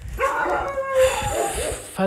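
A dog howling: one drawn-out call whose pitch slides up and down, lasting about a second and a half.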